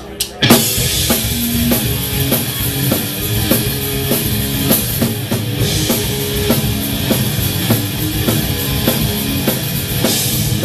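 Live rock band coming in after a few sharp clicks about half a second in, then playing loudly with drum kit, electric bass and guitar on a steady driving beat.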